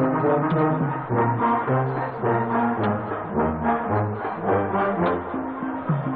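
A school wind band (a marching band seated in concert formation) playing, with brass to the fore and low brass holding long, deep notes under moving upper parts. It sounds dull, with no treble, as from an old videotape.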